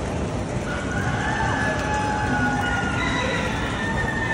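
Busy poultry hall: a steady din of crowd and fan noise, with drawn-out calls from the exhibited poultry over it, about a second in and again near the end.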